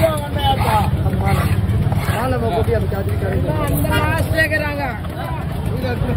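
People talking over one another, with a steady low rumble underneath.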